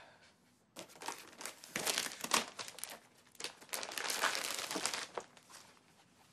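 Clear plastic packaging crinkling and rustling in irregular handfuls as a shirt is pulled out of its wrapping and gift bag; it starts about a second in and stops near the end.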